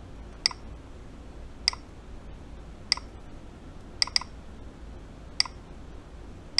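Light, sharp clicks, evenly spaced about every 1.2 seconds with one quick double click in the middle. They come from a bridging wire being tapped against a mechanical keyboard PCB's switch pins to trigger a key, making the key flash.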